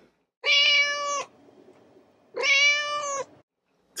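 A cat meowing twice: two long, evenly held meows about two seconds apart.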